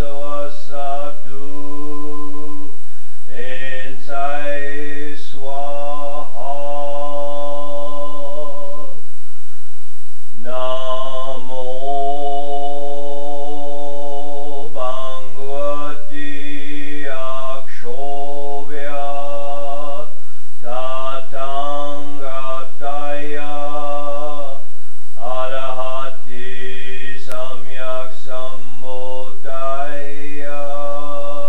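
A man chanting a Buddhist mantra in one steady voice, drawing out long held notes with small rises and falls in pitch, in phrases of several seconds with brief pauses for breath.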